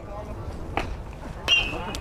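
A metal baseball bat fouling off a pitch: a sharp crack with a brief high ring about one and a half seconds in, after a fainter knock.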